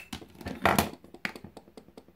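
Handling noises as a plastic handheld makeup mirror is found and picked up: a sharp knock, a brief loud rustle about half a second in and another click, then a run of faint, evenly spaced light ticks.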